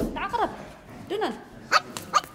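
A person's voice in two short, emphatic cries about a second apart, each rising and then falling in pitch, with a few sharp, brief sounds near the end.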